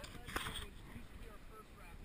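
Wind rumbling on the microphone of a camera held low over a river from an inflatable raft, with moving water around the boat and faint voices talking in the background. A brief, louder rush of noise comes about half a second in.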